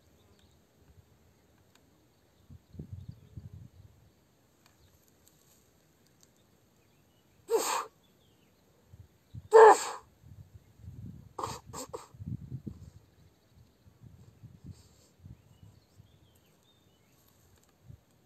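A person sneezing twice, about two seconds apart, the second sneeze louder, followed by two short, quieter bursts of breath.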